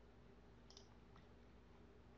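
Near silence: faint room tone with a few soft computer mouse clicks.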